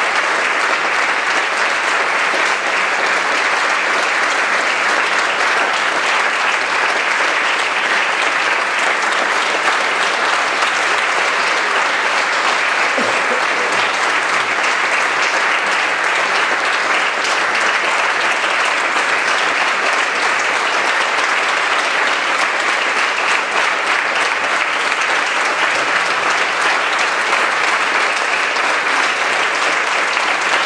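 Large theatre audience applauding, a dense, steady clapping that keeps on without a break.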